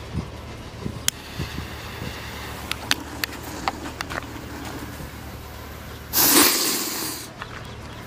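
A 'butterfly' firecracker burning: a steady hiss with a few sharp crackles, then a loud hiss lasting about a second, about six seconds in, as it fires.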